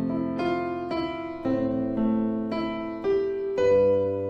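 Keyboard with a piano sound playing broken chords: a bass note held under chord notes played one at a time, a new note about every half second, each left to ring. The notes are arpeggios built only from the chords' own notes, starting on an F major seventh and moving to a G chord.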